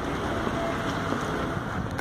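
Wind rumbling steadily on the microphone over the constant background noise of a city street.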